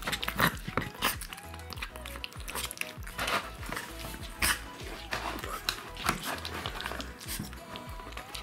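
Young Rottweiler puppies eating soft baby food from bowls: wet smacking and lapping clicks throughout, with a couple of brief puppy whines, over background music.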